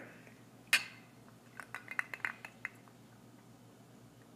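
Two rocks glasses clinking together once in a toast about a second in, a sharp chink with a short ring. This is followed by a run of small clicks of ice cubes against the glasses as the rum is sipped.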